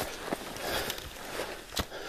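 Footsteps scuffing and crunching on a steep slope of dirt, rock and dry brush, with a few sharp crunches, the loudest near the end.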